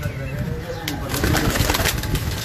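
Domestic pigeons cooing in a loft, with a quick flurry of wing flapping in the second half.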